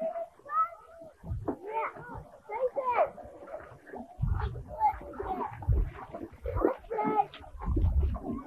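Voices of children and adults calling and chattering in short bursts, without clear words, with bursts of low rumble on the microphone about four seconds in and again near the end.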